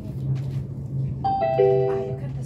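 Commuter train's onboard announcement chime: a few descending notes, starting about a second in and ringing on together, over the steady hum of the moving train. It is the signal that an automated stop announcement is coming.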